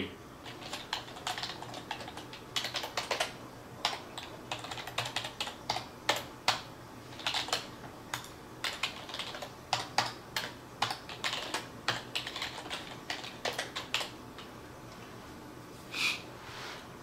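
Typing on a computer keyboard: quick irregular runs of key clicks with short pauses, stopping about two seconds before the end.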